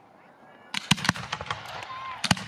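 Aerial fireworks bursting: a quick run of sharp cracks and bangs that starts just under a second in, several in rapid succession.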